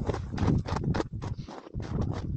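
Footsteps crunching on crusted snow, in a quick, irregular run of crunches.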